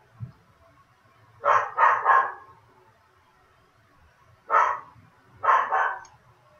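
Pet dog barking six times in three bunches: three quick barks, a single bark, then two more.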